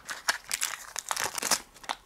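Small zip-lock plastic bags and a clear plastic case being handled and opened, the bags crinkling in irregular crackles.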